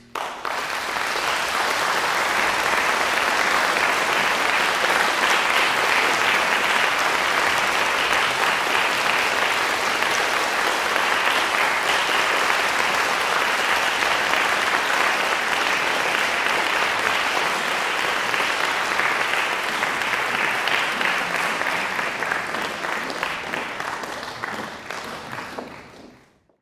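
Audience applauding steadily, then thinning into scattered claps and dying away near the end.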